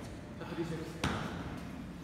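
A single sharp knock about a second in, with a short ring after it: a metal dumbbell set down on the gym floor.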